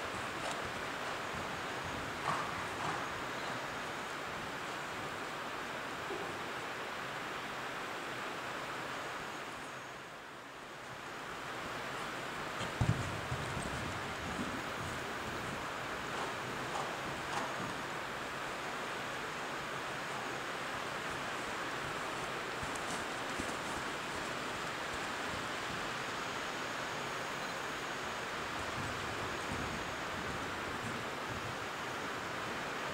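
Heavy rain pouring on the riding hall's sheet-metal roof, a steady hiss that dips briefly about ten seconds in and then returns. A few soft thuds come through it, the loudest about thirteen seconds in.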